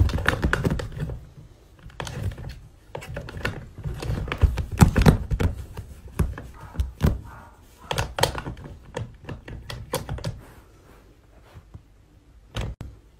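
Handling noise from a hand fumbling in a tight gap behind furniture: irregular knocks, clicks and rustling. It is loudest in the middle and dies down near the end.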